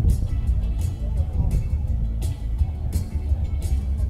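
Live ukulele punk band playing a fast song: ukulele, a heavy amplified upright bass and a cajon, with cymbal hits about every three-quarters of a second.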